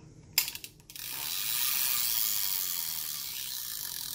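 Spinning fishing reel's ratchet clicking as it is turned by hand: a short burst of clicks about half a second in, then a steady, rapid clicking buzz from about a second in.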